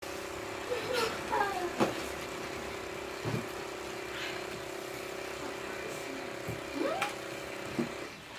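A steady motor hum that stops just before the end, with a few sharp clinks of forks on plates and brief voice sounds on top.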